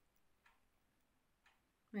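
Near silence: faint room tone with two faint clicks, one about half a second in and one near the end.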